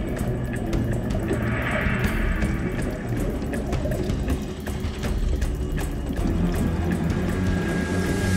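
Background music over underwater sound: a scuba diver's exhaled regulator bubbles rushing out about a second in, over a steady underwater crackle and low rumble.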